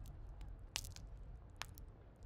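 Tavern eating-and-drinking ambience: a faint low room rumble with scattered small clicks and knocks of eating and tableware. The sharpest come just under a second in and again about a second and a half in.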